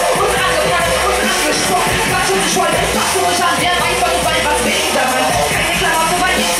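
Live hip hop through a PA: a rapper's voice over a beat with a steady bass line, played loud and continuous.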